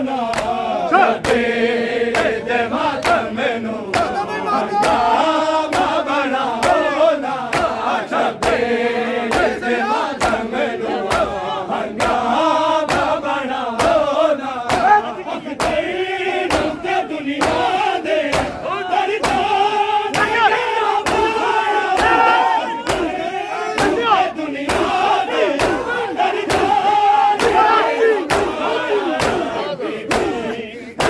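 A large crowd of men chanting a Punjabi noha together, over the sharp claps of open hands beating bare chests (matam) in a steady rhythm.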